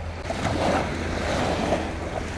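Small sea waves washing on a sandy shore, with wind rumbling on the microphone; the wash grows a little louder shortly after the start.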